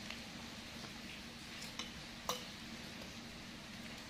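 A few light clinks of metal spoons and forks against a glass serving bowl, the sharpest a little past the middle, over a steady hiss of rain.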